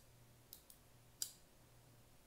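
Benchmade Mini Barrage AXIS-assist folding knife clicking as its blade is folded shut. There are three light clicks, and the last, about a second and a quarter in, is the sharpest.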